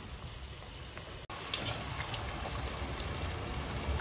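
Chebakia dough deep-frying in hot oil: a steady sizzling hiss with small pops, which turns suddenly louder about a second in.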